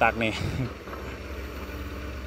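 Sumitomo hydraulic excavator's diesel engine running steadily with a low drone as the machine digs its bucket into wet mud.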